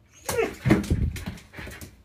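Siberian husky vocalizing back at a person in a run of about four short calls that bend up and down in pitch.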